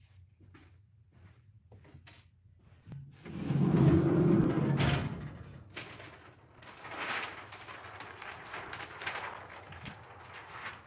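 Heat press's lower table sliding out in a loud low rumble lasting a couple of seconds, after a short click. It is followed by crinkling of kraft paper and the shirt being handled and smoothed on the table.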